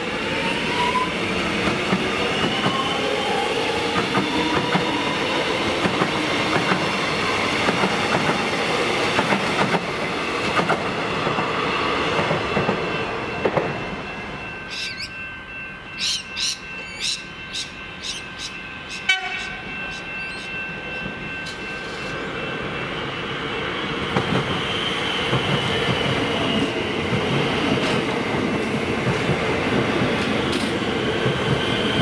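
Melbourne Metro electric multiple-unit train pulling out: its traction motors whine upward in pitch, then the wheels rumble on the rails and the sound fades as it leaves. Midway comes a short run of sharp clicks. Another electric train's running noise builds up near the end as it arrives.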